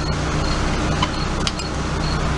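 Steady low hum and hiss of background noise, with two faint ticks about a second and a second and a half in.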